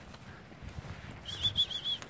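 A bird's short high-pitched trilled call in the second half: a quick run of about six rising-and-falling notes.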